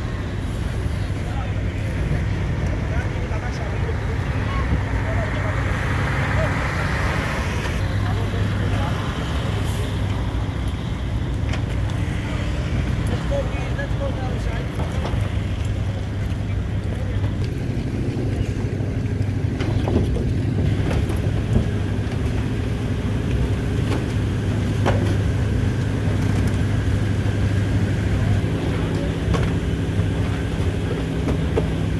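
Busy ferry quayside: a steady low engine drone with people talking, and a few sharp knocks about two-thirds of the way in.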